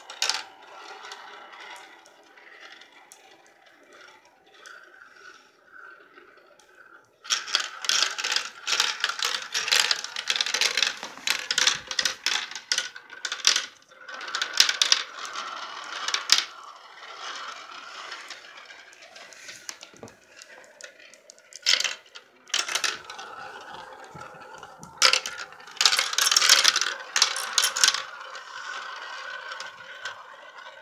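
Glass marbles rolling and rattling around the plastic funnels of a toy marble run, with clattering clicks as they drop through and hit the pieces. The clatter is sparse at first, turns busy about seven seconds in, eases off around seventeen seconds, then picks up again.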